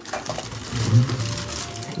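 Plastic wrapping and cardboard rustling and crackling as hands dig into a shipping box and pull out a packed toy figure.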